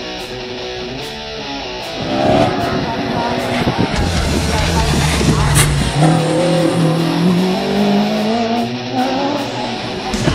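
Heavy metal guitar music, giving way about two seconds in to a Peugeot slalom race car's engine revving hard, its pitch climbing over the last few seconds.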